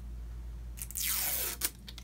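A lip cream tube being opened by hand: a scraping, rustling sound lasting about a second as the cap and applicator wand come off, ending in a sharp click.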